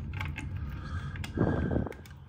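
Hands working a plastic Honeywell T6 Pro thermostat back plate against the wall while a mounting screw is twisted in by hand: small scattered clicks and rubs, with a louder rasping scrape about one and a half seconds in.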